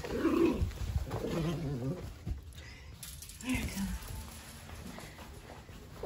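A dog growling in play, short wavering growls over the first two seconds and again briefly about three and a half seconds in.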